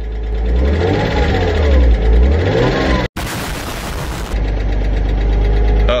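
1999 Porsche Boxster's 2.5-litre flat-six, heard from inside the cabin, revved gently twice and then idling steadily. A knocking or tapping noise persists after ten minutes' running; the owner puts it down to hydraulic lifters that have bled down from years of sitting.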